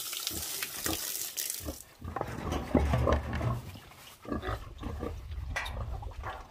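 A stream of water pouring onto rocks, which stops about two seconds in. A pig then grunts low and repeatedly at the water trough.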